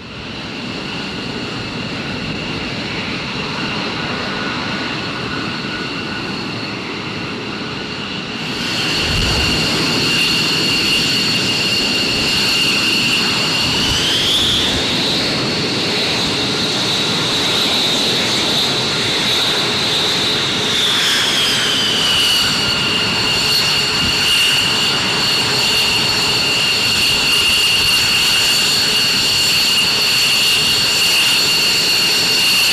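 F-15 Eagle fighter's twin jet engines running with a steady high whine over a roar. It gets louder about a quarter of the way in. About halfway through the whine rises in pitch as the engines spool up, holds for several seconds, then winds back down.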